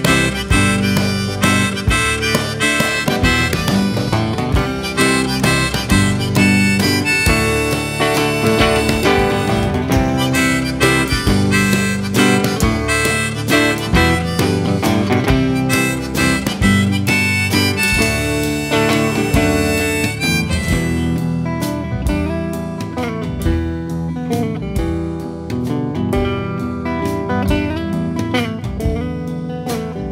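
Instrumental break of a folk-blues song: a harmonica plays a solo over strummed acoustic guitar. The harmonica drops out about two-thirds of the way through, leaving the guitar to carry on.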